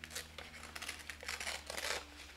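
Thin patterned packaging paper being torn by hand, a few short rips one after another.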